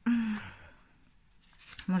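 A woman's sigh: a short voiced start that trails off into a breathy exhale, fading over about a second. Near the end she starts speaking again.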